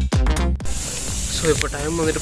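Electronic dance music with a heavy kick drum that cuts off abruptly about a quarter of the way in, giving way to a steady hiss with a man's voice starting near the end.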